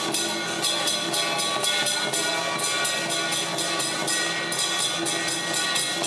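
A traditional temple-procession band playing: cymbals clash about three times a second over drums, under sustained horn-like wind tones.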